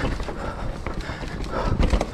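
YT Capra full-suspension mountain bike riding over a dirt forest singletrack: tyres rumbling over the ground, with irregular knocks and rattles as the bike hits bumps and roots, the strongest knock near the end.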